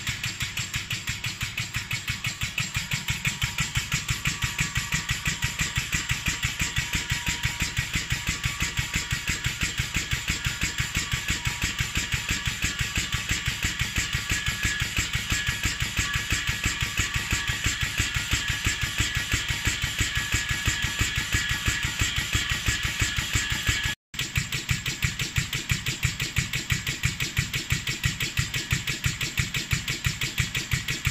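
Pneumatic handlebar fatigue-test rig cycling a carbon mountain-bike handlebar: air cylinders push the bar ends up and down in a fast, even rhythm of pulses with air hiss. The rhythm cuts out for an instant late on, then carries on.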